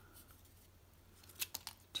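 Hand scissors snipping a small strip of craft material: a few quick, faint cuts close together about one and a half seconds in.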